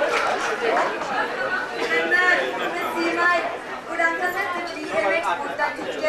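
Speech only: voices talking, with chatter-like overlapping talk, from performers on a stage.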